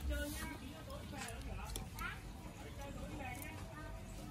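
Light, scattered metallic clicks of a steel spring trap and its wire-mesh plate being handled and fitted, under faint background voices.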